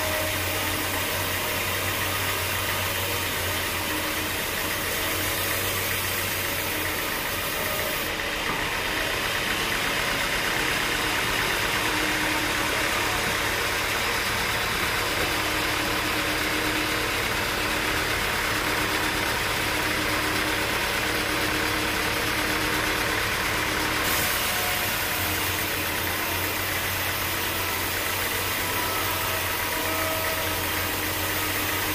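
Band sawmill running, its blade cutting lengthwise through a teak slab: a steady mechanical noise over a low hum. The sound shifts for a stretch in the middle, from about eight to about twenty-four seconds in, and is a little louder there.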